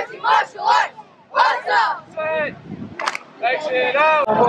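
A group of martial arts students shouting in unison during a form: a run of short, sharp shouts, roughly two a second with brief pauses. A single sharp crack about three seconds in.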